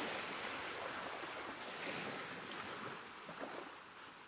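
A soft, even rushing noise, like surf or wind, that slowly fades out toward the end.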